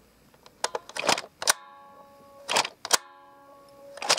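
Plastic clicks and clatter of small toy figures being handled and set into a plastic toy bus, in three short clusters. After the later two, a faint steady tone lingers for a second or so.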